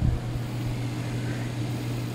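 Water-based air revitalizer running: a steady low motor hum as its fan churns the water in its glass bowl, with a short thump near the start.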